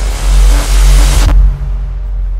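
Intro logo sting sound effect: a loud noisy whoosh over a deep bass rumble that cuts off sharply a little over a second in, leaving a low rumble that fades away.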